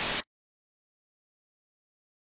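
A short burst of static hiss from a glitch transition effect that cuts off abruptly about a quarter second in, followed by dead digital silence.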